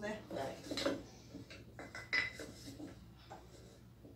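Metal kitchen utensils (wire whisks, tongs and a spatula) clinking against each other as they are handled and set into a utensil pot, a few separate clicks with one sharp ringing clink about two seconds in.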